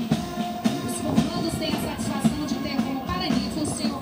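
Military band playing a march with drum beats, accompanying troops on parade.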